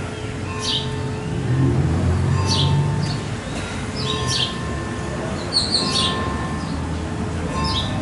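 Birds chirping: short, quick high calls that fall in pitch, repeating every second or two, with a small cluster of them in the second half. A low rumble runs underneath, strongest in the first half.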